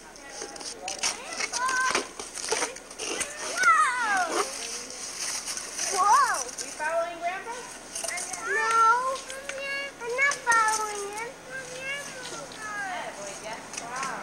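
High-pitched children's voices calling out and squealing in short cries that rise and fall in pitch.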